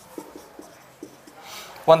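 Marker pen writing on a whiteboard: a few short scratchy strokes as a line of figures is written. A man's voice starts again near the end.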